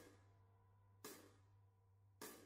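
Faint cymbal strikes from a recorded backing track, one at the start and another about a second later, each ringing out briefly over a faint low hum.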